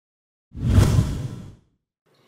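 A whoosh sound effect for a video transition: one noisy swell with a deep low rumble, starting about half a second in and fading out after about a second.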